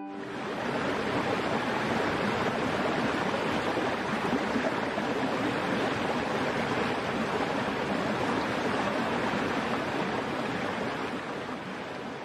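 Rushing water of a cascading forest stream, a steady rush that swells in at the start and fades away near the end.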